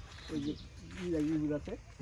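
Speech only: a person talking in short phrases, with brief pauses between them.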